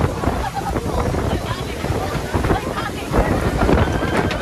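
Strong storm wind buffeting the microphone on a boat's open deck, a heavy continuous rumble, over the rush of a choppy sea.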